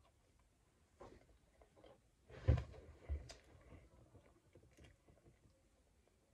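Quiet eating sounds from a child pulling apart and chewing a hotteok (Korean filled pancake), with faint scattered clicks and rustles. A dull thump about two and a half seconds in is the loudest sound, with a smaller one just after.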